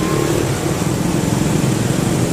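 Several small motorbike and scooter engines running close by, steady, amid street traffic.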